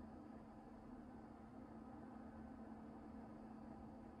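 Near silence: faint steady room tone with a low hum.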